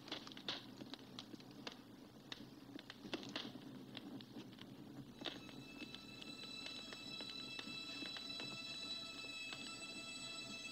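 Faint film-soundtrack effects of scattered small clicks and crackles. About halfway through, quiet music with several sustained high held tones fades in and continues beneath them.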